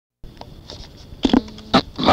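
Old cassette tape playback starting: steady tape hiss with faint clicks, then two short louder bursts a little over a second in, just before the voices begin.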